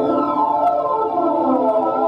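Synthesizer music played on a Roland keyboard: layered tones sweeping up and down in pitch in crisscrossing, siren-like glides.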